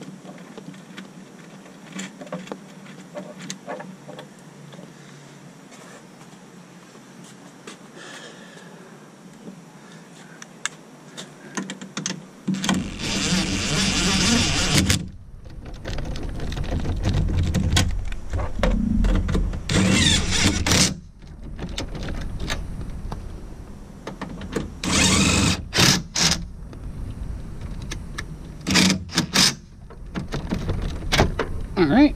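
Mounting nuts of a new towing mirror being run down by a cordless drill-driver with a socket, in several bursts of a few seconds each starting about twelve seconds in. Before that, faint small clicks as the nuts are threaded on by hand.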